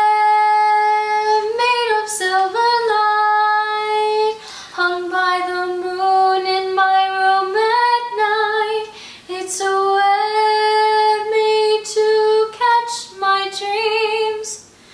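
A young woman singing solo without accompaniment, a slow harmony line of long held notes with short breaths between phrases.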